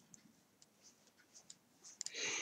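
Near silence, with a few faint, short ticks of a crochet hook working yarn as a double crochet stitch is made.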